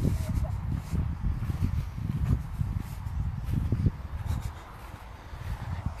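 Gusty low rumble of wind and handling on a phone microphone while walking through long grass, with faint footfalls and swishes. The rumble eases off near the end.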